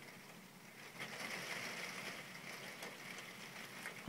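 Faint steady rain, with scattered light ticks from about a second in.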